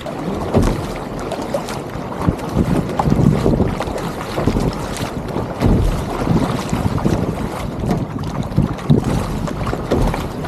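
Water sloshing and splashing along a sea kayak's hull as paddle blades dip in and pull through, in irregular surges, with wind buffeting the microphone as a low rumble.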